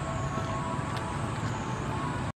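Steady outdoor background noise: a constant high-pitched drone and a few steady mid-pitched tones over a low rumble, unchanging throughout.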